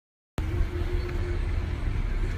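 A split second of silence, then outdoor street traffic noise: a steady low engine rumble from road vehicles.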